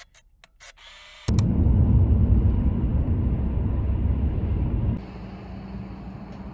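Outdoor background noise: a loud low rumble with no clear pitch cuts in suddenly about a second in, then drops to a quieter steady outdoor hum near the end.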